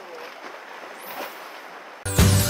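Seaside wind and waves washing against a rocky shore, with faint distant voices and a brief rising swish about a second in.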